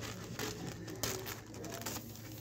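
Scissors cutting thin kite paper: a few short snips and rustles of the paper.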